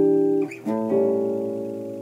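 Hollow-body electric jazz guitar playing two chords of a reharmonised turnaround in C: an E minor chord ringing, then an A7 struck about half a second in and left to ring and fade. The E minor stands in for the C major tonic chord.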